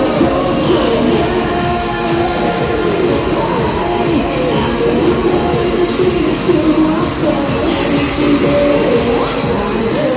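Live K-pop music played through an arena sound system, with singing over a steady beat, recorded from among the audience.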